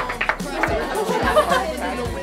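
Overlapping chatter from a group of girls' voices, several talking at once.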